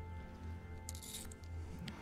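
Quiet film score: a low pulsing drone with soft held tones, and a brief hiss about a second in.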